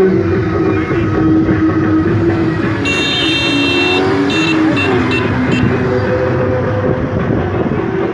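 Vehicle horns in a slow-moving car convoy: a high-pitched horn sounds about three seconds in and is held for about a second, followed by several short toots. A steady rumble of traffic runs underneath.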